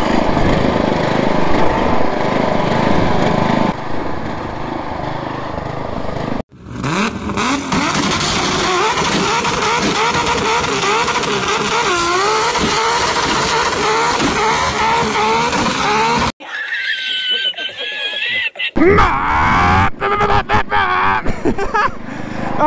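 Riding lawn mower engine running hard under load, its pitch rising and falling, as the mower bogs in deep mud with its rear tire spinning. The sound breaks off abruptly at a few points.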